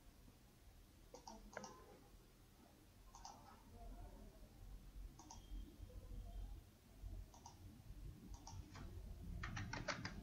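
Faint computer mouse clicks: single and double clicks spread out every second or two, then a quicker run of clicks near the end.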